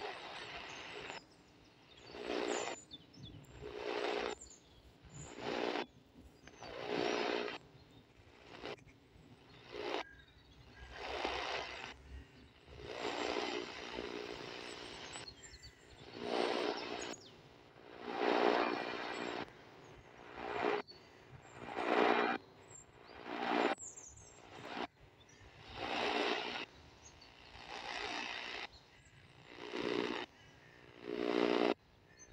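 Sihuadon R-108 portable radio being tuned step by step across the top of the medium-wave band, giving about fifteen short bursts of static and garbled signal, one every second or two, with brief silences between steps.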